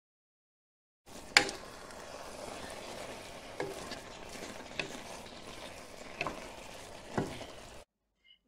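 Ground beef sizzling steadily in a frying pan, starting about a second in, with a spoon knocking against the pan as the meat is stirred: one sharp knock early on is the loudest, followed by four lighter ones spread through the rest.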